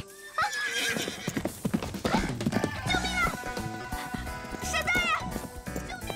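A horse acting up: it whinnies twice, about halfway through and again near the end, among stamping, clattering hooves, over background music. It is a sign the horse is in distress and going out of control.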